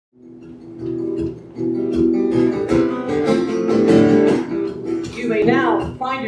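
Acoustic guitar strummed, its chords ringing and repeating steadily; a voice comes in near the end.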